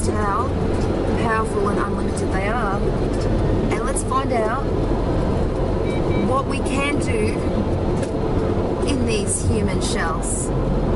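Steady low rumble inside a car's cabin, with a voice heard on and off over it.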